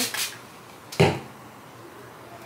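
Spray bottle giving one short spritz about a second in.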